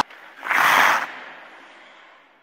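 A single short hiss-like burst of noise about half a second in: a transition sound effect for an animated title graphic. It lasts about half a second, then fades slowly away.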